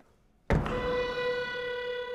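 Contemporary chamber ensemble music opening with a sudden loud, sharp attack about half a second in, which rings on as a held pitched note with bright overtones.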